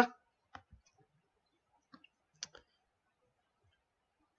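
A few faint computer mouse clicks, scattered over the first two and a half seconds, the clearest about two and a half seconds in.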